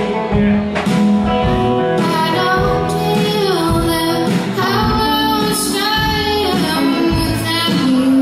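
A live band playing a song, a woman singing the lead over guitars and a steady drum beat.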